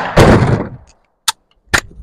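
Rifle fire from an AK-47 and an AR-15: two loud shots close together at the start, the second ringing out for about half a second, then two short sharp cracks later on.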